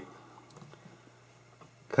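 Faint scraping and a few soft clicks of a box cutter blade cutting into the crimped plastic top of a shotgun shell.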